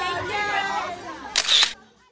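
Voices chattering and fading, then a camera shutter click-clack about a second and a half in, after which the sound cuts off to silence.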